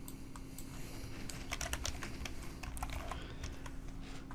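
Computer keyboard being typed on: a run of quick key clicks, densest in the middle, as a word and a number are entered into form fields.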